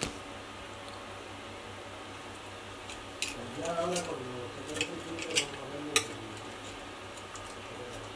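Knife and fork cutting through the crisp fried breading of a veal cachopo on a plate: a few sharp clicks and crunches in the middle, over a faint steady room hum.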